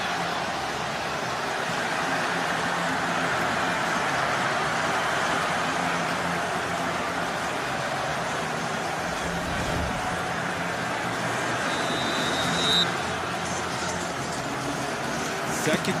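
Large stadium crowd cheering a home-team touchdown: a steady, dense noise of many voices. A brief high thin tone sounds about twelve seconds in.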